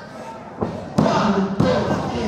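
Referee's hand slapping the wrestling ring mat during a pinfall count: two sharp thuds a little over half a second apart, with a fainter knock just before them.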